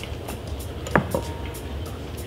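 A table knife levered against the cap of a glass beer bottle, trying to pry it off, gives one sharp click about a second in with a brief thin ring after it, over a steady low background hum.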